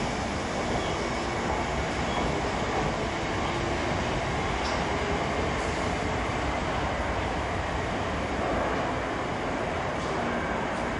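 Slam-door electric multiple unit pulling out of a platform and running away round a curve: a steady rumble of wheels on rail and running gear, with no distinct squeal or horn.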